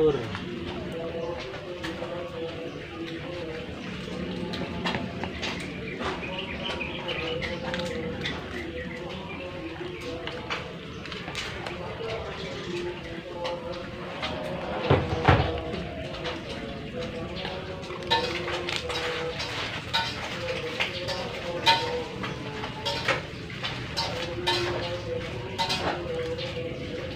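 A spatula scraping and knocking against a wok while stirring boiled fish, a run of short clicks that comes thicker in the second half, with one louder knock about halfway through.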